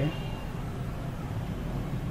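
Steady background noise with a low, constant hum.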